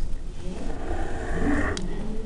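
Faint scratching of a pen drawing on paper over a steady low background hum.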